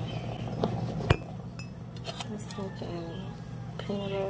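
A table knife clinking and scraping against a plate while spreading a sandwich: several sharp clinks, the loudest about a second in.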